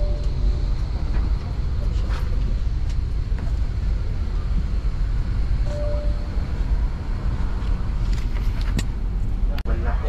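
Steady low rumble inside a parked Boeing 787 Dreamliner's cabin, with faint passenger voices. A brief steady tone sounds twice: at the very start and again about six seconds in.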